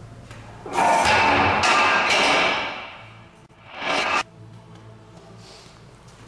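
A steel strongman log is dropped from overhead and crashes onto the rubber floor and tyres about a second in, ringing and rattling for a couple of seconds as it settles. A second, shorter clatter comes about four seconds in and stops suddenly.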